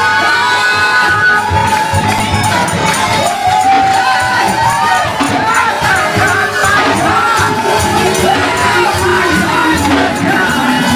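Gospel praise-break music with the congregation shouting and singing over it, played back slowed down and pitched low in a chopped-and-screwed edit at 87% speed.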